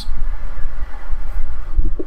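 Microphone being knocked: a steady low rumble of handling noise with a dull thump near the end.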